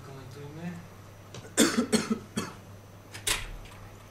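A person coughing: a loud cluster of coughs about halfway through and one more short cough near the end, over a faint murmuring voice and a steady low hum in the room.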